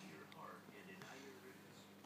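Near silence, with a faint whispered voice.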